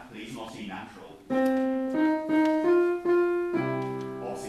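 Piano playing a short line of about five single notes, each one higher than the last, then a held chord near the end, as a rehearsal accompaniment for a choir.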